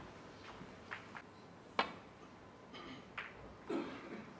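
Quiet background broken by a handful of short, sharp clicks and knocks, the sharpest a little under two seconds in and a duller one near the end.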